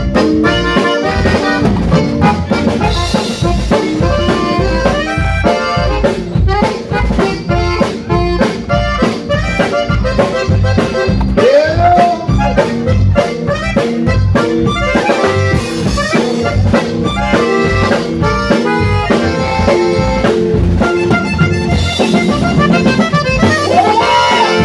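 Live band music led by a Hohner button accordion playing a quick melodic lead over a steady drum-kit beat.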